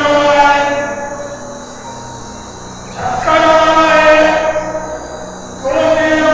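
An elderly Buddhist monk chanting into a microphone in long, steady held notes. One note fades out about a second in, a new one starts about three seconds in, and another starts near the end.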